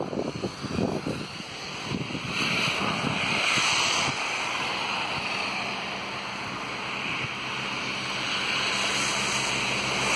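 Steady hiss of car tyres on a wet, slushy road, swelling and fading as cars pass.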